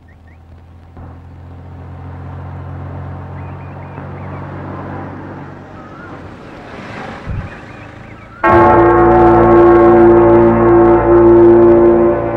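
A car's engine running low and steady, with a few faint bird chirps. About two-thirds of the way through, loud sustained bell tones start suddenly and ring on to the end.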